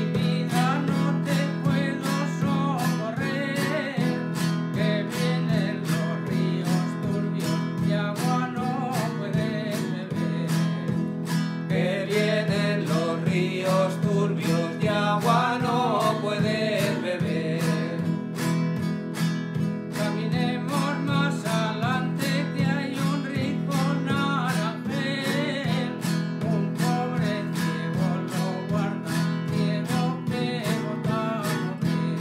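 Acoustic guitar played in the old struck-and-strummed style (golpeado and rasgueado), with a steady rhythm of strokes. It accompanies men singing a traditional Christmas song, the voices coming in and out in verses.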